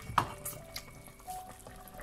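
Pot of chicken broth bubbling on the stove, with a sharp knock about a fifth of a second in and a few fainter clicks of handling after it. Faint steady tones sit in the background.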